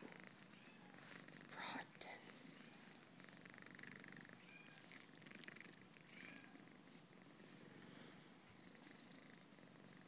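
Domestic cat purring faintly and steadily while its face and chin are rubbed by hand, a sign of contentment. A brief louder sound comes just before two seconds in.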